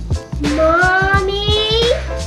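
Background music with a steady beat, over which a young boy makes one long rising "ooh" of amazement.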